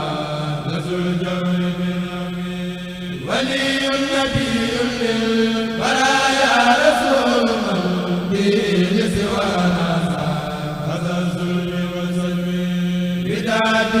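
Male voices chanting Arabic religious verse (a qasida) in long, drawn-out held notes, with a new phrase every few seconds.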